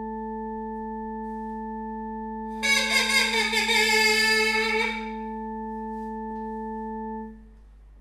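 A steady, unwavering drone note sounds for about seven seconds and stops near the end. For about two seconds in the middle, a louder, brighter note with a slightly wavering pitch is played over it.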